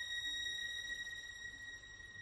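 A quiet passage of orchestral music: one high, pure-sounding note held steadily by a single instrument or section, slowly fading in the second half.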